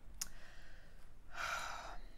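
A soft click, then a short breathy sigh or exhale from a person near the end.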